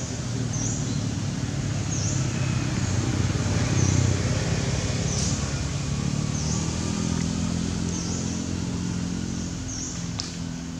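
A motor vehicle's engine passing by, growing louder to a peak about four seconds in and then slowly fading. A short high-pitched chirp repeats about every second and a half over it.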